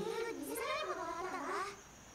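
A young girl's high-pitched voice speaking a line of Japanese anime dialogue, its pitch rising and falling, breaking off shortly before the end.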